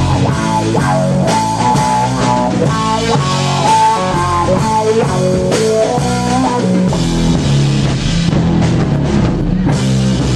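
Live rock band playing an instrumental passage: electric guitar melody of held, bending notes over bass and a drum kit, loud and steady.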